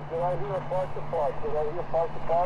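A distant amateur radio operator's voice on single sideband, received by an Elecraft KX2 transceiver and heard through its speaker. The voice is thin and faint over steady band hiss.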